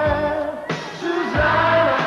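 Pop song: a male voice singing long held notes over band backing, the note changing about every two-thirds of a second.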